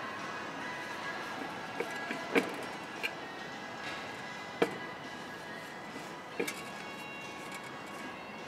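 Quiet background music, broken by a few short, sharp metallic clicks and knocks as a dual-mass flywheel is handled and positioned against the crankshaft flange. The loudest clicks come about two and a half seconds in, near the middle and again about six seconds in.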